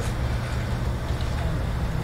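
A pause between a man's sentences, holding only a steady low hum of room background noise.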